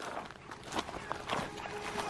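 Footsteps in running shoes on a dirt and grass track, a few soft steps at a walking pace.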